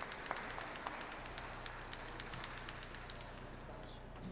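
Last few scattered handclaps from the audience dying away, over a faint low steady hum.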